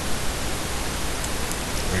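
Steady, even hiss of background noise with a low hum underneath, the noise floor of a desk recording.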